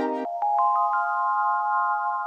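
Instrumental music: a full sustained chord cuts off just after the start, then single high notes come in one after another within the first second and ring on together as a held chord.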